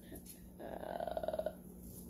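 A woman's short rattling breath sound, made with a tissue held to her face. It starts about half a second in and lasts about a second.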